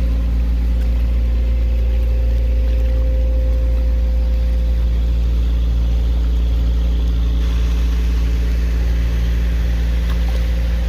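Engine running steadily at low speed: an even drone with a deep rumble and several steady low tones that do not change.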